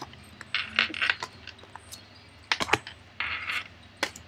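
Tarot and oracle cards being picked up and stacked by hand: several light taps and clicks of card on card, with two short swishes of cards sliding over each other.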